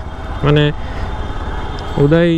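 Steady running noise of a motorcycle being ridden slowly in traffic: engine and road noise.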